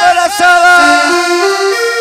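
Accordion on a cumbia track playing a melody of short stepped notes, climbing and then falling back, through a large sound system. It comes in about half a second in, as a voice fades.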